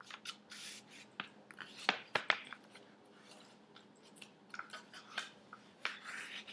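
A sheet of paper being folded in half and creased by hand, with short rustles and sharp crackling clicks. The loudest clicks come in a cluster about two seconds in, with more near the end.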